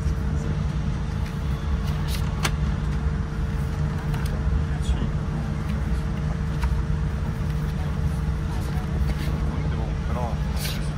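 Boeing 787 cabin noise: a steady low rumble with a constant hum. Pages of a magazine rustle softly a few times as they are turned.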